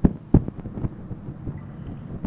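A squirrel cracking and crunching peanuts and corn kernels: two sharp cracks right at the start and about a third of a second in, then fainter crunching.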